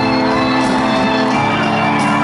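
Live hip-hop concert: a song's instrumental intro playing loud over the PA, held synth-like chords that change about halfway through, with the crowd shouting over it.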